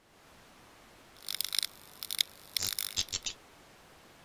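Sound effects of the animated end card: a quick run of short, crackly, high-pitched hissing bursts, about a dozen over two seconds starting a second in, over a faint steady hiss.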